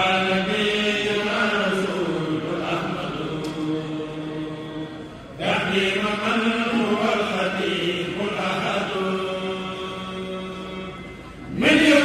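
A kourel of male voices chanting a Mouride xassida together in long, drawn-out melismatic phrases. One phrase breaks off about five seconds in and a new one begins, and another starts just before the end.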